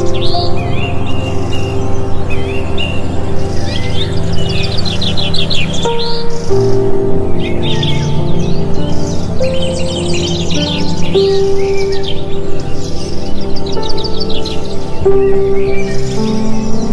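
Calm background music of long held notes, shifting to new chords a few times, mixed with a steady stream of bird chirps and quick high trills.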